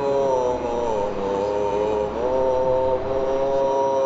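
A man's voice chanting one long droned note, sliding down in pitch about half a second in and back up about two seconds in, over the steady road noise of a car.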